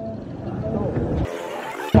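Riding on a motorbike through a street: a steady low rumble of wind and engine with traffic noise and a faint voice, which breaks off abruptly about a second and a quarter in to a brief thin hiss.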